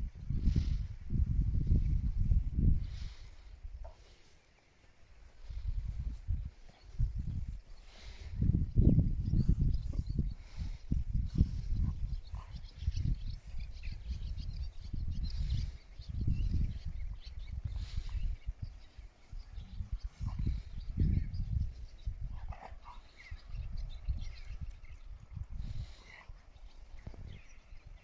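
A mother dog and her puppies moving, nursing and scuffling on grass, with a few faint puppy squeaks, over an uneven low rumble that swells and fades.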